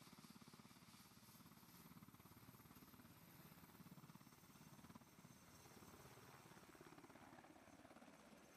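Very faint, rapid, even thudding of a Black Hawk helicopter's main rotor as the helicopter lifts off.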